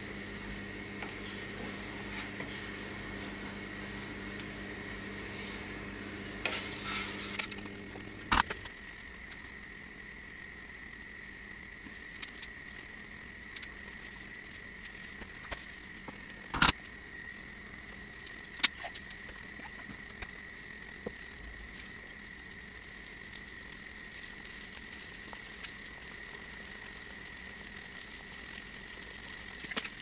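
Plum jam boiling in a stainless steel pan, a steady bubbling as it cooks toward its setting point. A low hum stops suddenly with a click about eight seconds in, and a few sharp knocks stand out, the loudest about halfway through.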